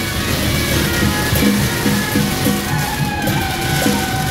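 Traditional Taiwanese procession wind music: a melody played on horns by musicians riding parade carts, with a steady beat underneath.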